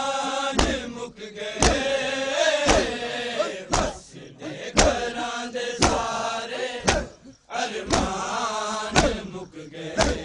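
A crowd of men chanting a Punjabi noha (mourning lament) together in long held phrases. Loud, sharp strikes land in time about once a second, consistent with hands beating chests in matam.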